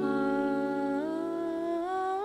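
Background music in a pause of spoken poetry: a held chord with a voice humming one long note that slides up a little about a second in.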